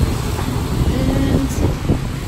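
Street traffic on a wet city road: a steady low rumble of vehicles with a hiss of tyres.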